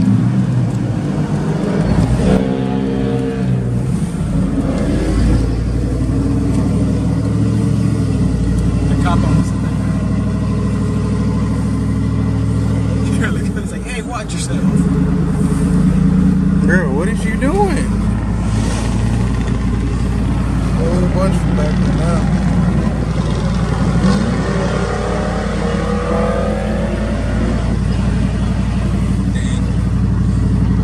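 Car engine and road noise heard from inside a moving car, a steady low drone, with the engine note rising as the car speeds up in the second half.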